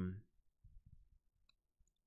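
A man's drawn-out "um" trails off, followed by a near-silent pause with faint room tone and a faint tiny click about one and a half seconds in.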